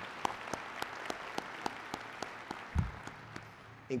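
An audience applauding, with one person's sharp, evenly spaced claps standing out close by. The applause dies away about three and a half seconds in, with a low thump near the end.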